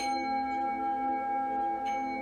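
Small brass singing bowl played with a stick, ringing with several steady tones and a slow pulsing wobble. There is a light click of the stick on the bowl at the start and again near the end. It is rung to bring the class back out of final relaxation.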